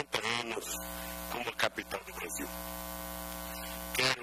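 A steady electrical buzz, like mains hum in a sound system, under short bits of speech in the first half; the buzz is left on its own from about halfway through.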